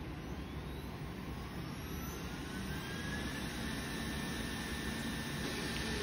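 Roborock E4 robot vacuum powering up: its suction fan motor spins up with a whine that rises in pitch over the first two or three seconds, then holds steady as it runs.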